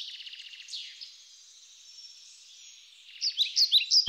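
Songbirds calling: a fast high trill that fades about a second in, faint calls, then a series of quick downward-sliding chirps near the end. The sound is thin and high, with nothing low in it.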